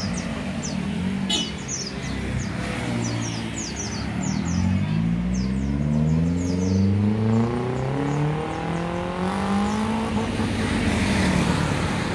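A minivan's engine running through an aftermarket exhaust, revving as the van pulls away and accelerates. The engine note climbs steadily for several seconds, rises again, then eases near the end. Birds chirp repeatedly over it.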